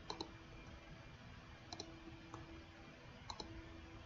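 Computer mouse clicks: three quick press-and-release click pairs about a second and a half apart, with a fainter single click between the last two, over a faint steady hum.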